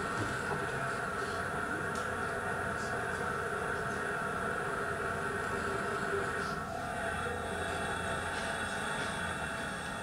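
The steady roar of a SpaceX test rocket's engine firing during a first-stage hover test, coming from a video played back through a lecture hall's speakers. It holds at a constant level throughout and eases off at the end.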